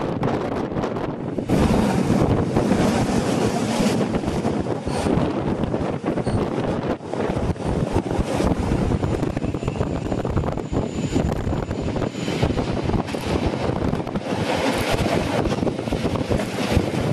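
Rhaetian Railway Bernina line train running along the track, heard from on board: a steady rumble of wheels on rail mixed with wind buffeting the microphone, getting louder about a second and a half in.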